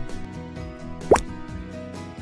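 Background music with steady tones, and about a second in a short, quick upward-sliding 'bloop' sound effect, the loudest thing heard, as the animation moves to a new section title card.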